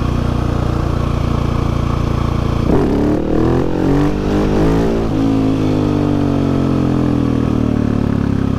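Husqvarna 701 Supermoto's big single-cylinder four-stroke engine running steadily through Wings aftermarket silencers, then a sharp throttle opening about three seconds in. The revs climb for a couple of seconds and then slowly fall away as the front wheel is lifted in a wheelie. The owner thinks the silencers need repacking.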